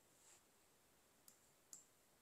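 Near silence with a few faint computer mouse clicks, the clearest one near the end.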